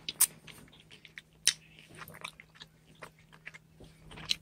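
Close-up chewing of a mouthful of cereal: irregular small crunches and wet clicks, with two sharper clicks, about a quarter second in and about a second and a half in.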